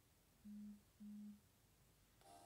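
Two short, low electronic beeps, each a single steady tone lasting under half a second, about half a second apart.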